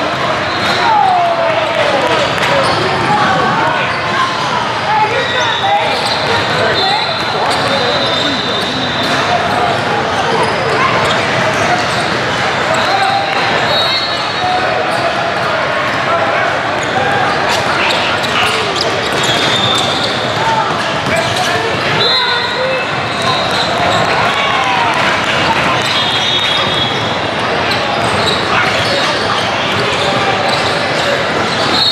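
Basketball game sound in a large, echoing hall: the chatter of many voices, basketballs bouncing on a hardwood court, and sneakers squeaking on the floor several times, each squeak short and high.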